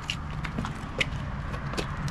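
Footsteps on asphalt, a string of light, sharp steps at a brisk walking pace, over a steady low rumble.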